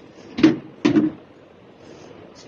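Two sharp thumps, about half a second apart.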